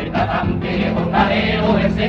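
A carnival comparsa, a male choir, sings a song in several-part harmony over a steady guitar accompaniment.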